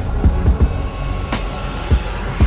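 Logo-sting sound design: deep booming hits that drop in pitch, several in the first half-second and one more near the end, over a rushing noise, set to music.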